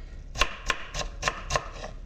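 Steel chef's knife finely chopping a red onion on a wooden cutting board: about six quick, sharp knife strikes on the board, roughly three a second.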